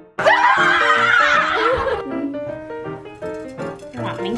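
Background music with a steady melody throughout. A burst of children's laughter comes over it about a quarter second in and fades out after about two seconds.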